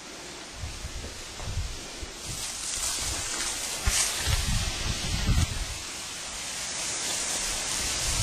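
Rustling of grass and leaves close to the microphone, with hissing wind noise and irregular low buffeting thumps from wind and handling of the camera.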